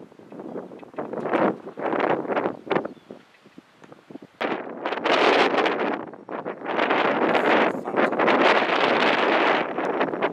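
Wind buffeting the camera microphone in gusts: several short gusts, a brief lull just before halfway, then louder, almost unbroken buffeting through the second half.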